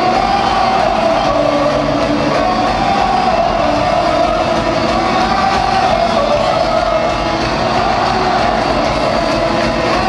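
Heavy metal band playing live in an arena: electric guitars, drums and vocals, loud and blended together as heard from within the crowd.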